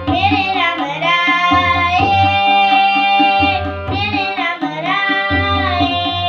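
Sikh kirtan: a child's voice singing a devotional hymn over a harmonium and tabla. The voice comes in right at the start with long held notes and a short break near the middle. The harmonium's reeds sound steadily, and the tabla's low bass drum strikes recur underneath.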